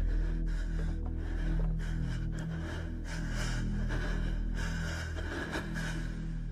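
Tense horror-film score: a low steady drone, with scattered faint clicks and rustles over it.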